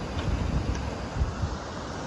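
Wind buffeting the microphone in uneven low gusts, over a steady wash of surf.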